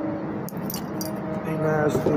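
A few quick metallic jingles and clinks about half a second to a second in, like a metal chain or keys being handled. Underneath is background music with a sung voice, which grows louder near the end.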